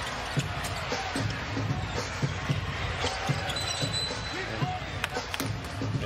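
Basketball dribbled on a hardwood arena court, repeated irregular bounces with short squeaks, over steady crowd noise and background music.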